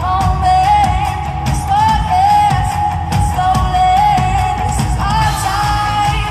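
Live pop-rock band performing: a female lead vocal sings a melody over drums, keyboards and electric guitar, loud and full in a concert hall.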